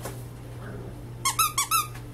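Squeaky dog toy squeezed four times in quick succession a little past a second in: four short, loud, high-pitched squeaks, each bending in pitch.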